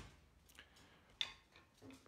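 Near silence broken by a few faint clicks and taps, with one sharper click a little after a second in: handling noise from a phone being moved and set up while it records.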